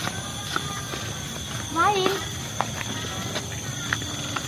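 A steady chorus of night crickets, heard as two unbroken high tones, with one short, wavering human vocal sound about two seconds in and a few light clicks or steps scattered through it.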